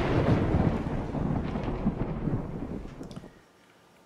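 A deep, noisy rumbling sound effect that fades away over about three seconds.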